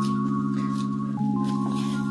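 Background music: soft sustained chords, with the chord changing about a second in.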